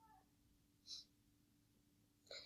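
Near silence: room tone, with a faint, short arching tone at the very start and a soft, brief hiss about a second in.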